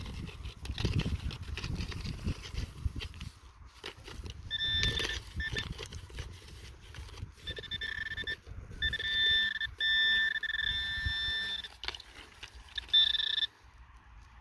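Metal-detecting pinpointer giving its electronic alert tone in short bursts, then near-continuously for about three seconds, as its tip is worked through loose clods of soil close to a metal target. Underneath, soil clods crumble and scrape against the probe and glove.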